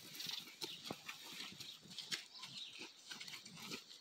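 A horse and a person walking over dirt and straw, with the plastic tarp draped over the horse's back crinkling as it moves: a quiet run of irregular soft steps and crackles.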